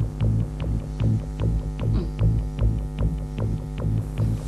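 Tense background music: a sustained low drone throbbing about twice a second, with light ticks over it.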